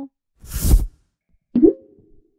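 Logo-animation sound effects: a short whoosh about half a second in, then a sudden cartoon-like pop about a second later, ending in a brief tone that dies away.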